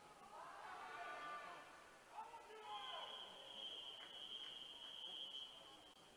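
Faint distant voices echoing in a quiet pool hall. A little under three seconds in, a long steady high-pitched whistle sounds for about three seconds: the referee's long whistle that calls backstroke swimmers into the water before the start.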